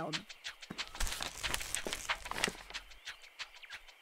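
Cartoon footstep sound effect: a quick patter of light steps, about four a second, as a character hurries off, stopping about a second before the end.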